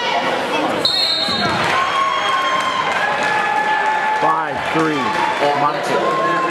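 Coaches and spectators yelling in a gymnasium during a wrestling bout, several voices overlapping with some long drawn-out shouts. A brief high-pitched tone sounds about a second in.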